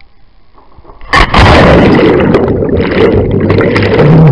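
A loud splash about a second in, then churning, crackling water noise right on the microphone, overloading it.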